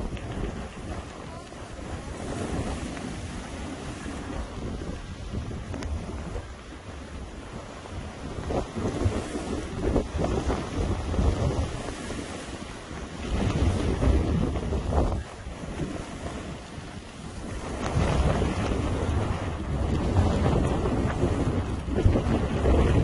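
Wind buffeting the microphone of a camera carried by a moving skier, mixed with the hiss of skis sliding over snow. The rushing rises and falls in surges, loudest near the end.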